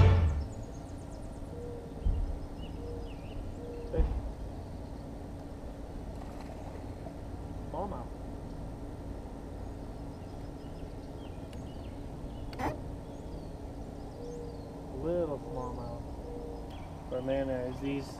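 Quiet open-air sound on a small fishing boat: a low steady hum with two dull thumps in the first few seconds and one sharp click later, and a man's short vocal sounds near the end.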